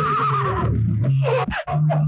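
A horse whinnying: one wavering call in the first half-second or so, followed by a few short sharp sounds about a second and a half in.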